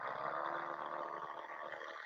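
Electric toothbrush buzzing steadily while brushing teeth, the head working inside the mouth.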